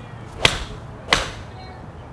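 TaylorMade R7 TP seven iron striking a golf ball off a hitting mat: a sharp crack about half a second in, then a second similar sharp strike about two-thirds of a second later.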